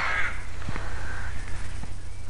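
A crow cawing, over a steady low rumble.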